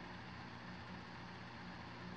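Faint, steady low hum with background hiss and no distinct event: room tone.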